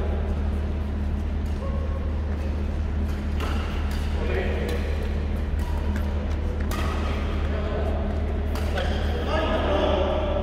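Badminton rackets striking a shuttlecock during a doubles rally: several sharp hits spaced one to three seconds apart, over a steady low hum and voices.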